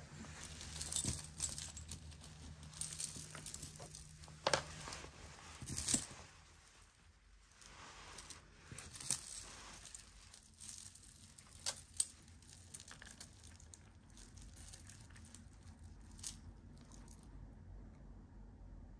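Tangled costume-jewelry chains, pendants and beads clinking and jingling faintly as they are handled and picked apart, with scattered sharper clicks.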